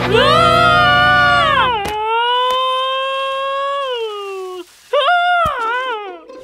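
Comic cartoon soundtrack: a long pitched note that swells up and slides down, a second long note that sags at its end, and a short wavering note near the end.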